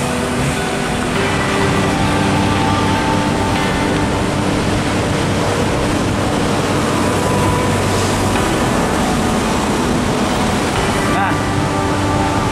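Road traffic noise and wind rushing over the microphone of a camera riding along a busy road, with a steady hum from passing engines.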